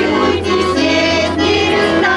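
A women's folk ensemble singing together in chorus, accompanied by a button accordion (bayan).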